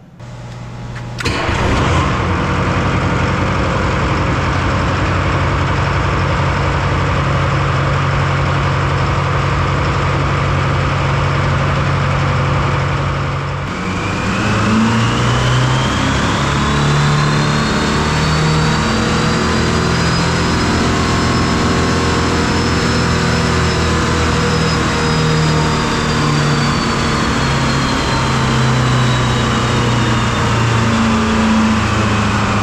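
Detroit Diesel 4-53T two-stroke, turbocharged four-cylinder diesel running loud and steady on an engine dyno. The sound comes in suddenly about a second in. About 14 seconds in, the engine note changes as it is loaded near 1,800 rpm, and a high turbo whine rises, holds and then slowly falls.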